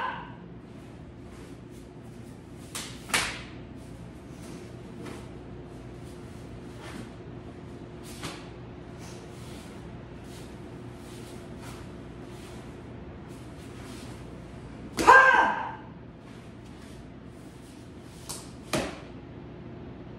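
Taekwondo practitioner's kihap, one short loud shout about fifteen seconds in, amid a few sharp swishes and snaps from the strikes and kicks of the form.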